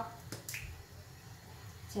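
A couple of light, sharp clicks from the plastic cap of a small soy sauce bottle being opened, with another faint click near the end.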